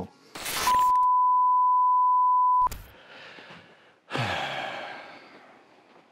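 A steady high-pitched censor bleep held for about two seconds and cut off sharply, then a long breathy sigh that fades out.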